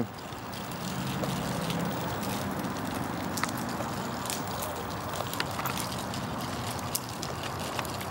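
Plastic stroller wheels rolling over rough asphalt: a steady rumbling noise with scattered small clicks and rattles from the wheels and frame.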